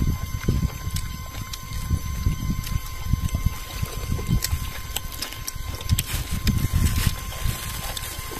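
Irregular low rumbling on the microphone, with a few light clicks of metal spoons against pots and plates as people eat.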